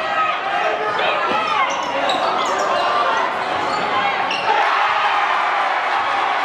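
Live gym sound of a basketball game in play: a basketball bouncing on the hardwood court amid steady crowd chatter, with short high sneaker squeaks.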